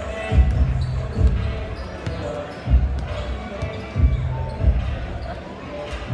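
Basketballs bouncing on a hardwood gym floor, heavy thuds coming irregularly about once a second, over the murmur of crowd chatter.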